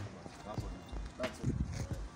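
Quiet, low talk: a few murmured words between people, well below the level of the surrounding conversation.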